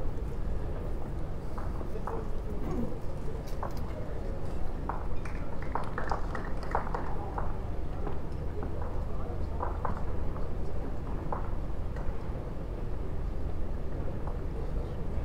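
Bowls clacking against one another as they are pushed out of the head by foot after an end, in scattered short knocks that come thickest a little before halfway through. A steady low hum of the hall lies under them.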